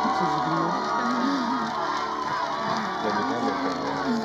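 Background music with a small group of people shouting and cheering excitedly over it.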